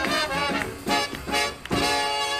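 Live swing band with brass playing up-tempo swing music for Lindy Hop. It plays short, punchy hits with brief gaps, then moves into a held chord near the end.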